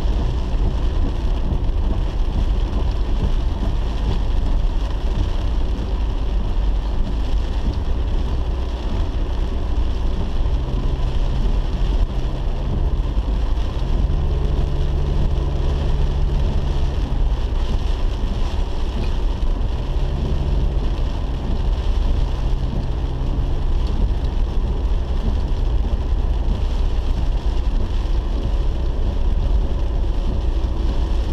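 Car cabin while driving in heavy rain: steady low engine and tyre rumble on the wet road, with rain hissing on the windshield. A low engine hum stands out more clearly through the middle.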